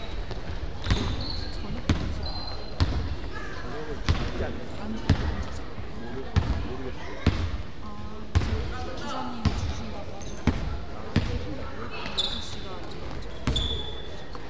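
Basketball being dribbled on a hardwood court floor, one bounce about every second at a slow, steady pace.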